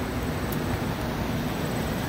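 Greenhouse industrial fans running: a steady rushing noise with an unsteady low rumble underneath.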